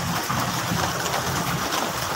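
Steady rush of floodwater over a street, with a low engine hum from traffic wading through it.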